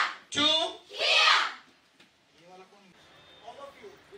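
A group of women shouting together twice, about half a second apart, in self-defence drill shouts (kiai) timed with their strikes. Faint chatter of many voices follows from about halfway through.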